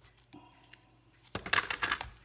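Cardstock being handled and pressed flat by hand: faint paper rustles, then a loud burst of crackling paper rustles for about half a second near the end.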